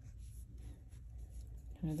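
Faint scratching of a fine paintbrush stroking wet paint onto textured watercolor paper, over a low steady hum. A woman's voice starts near the end.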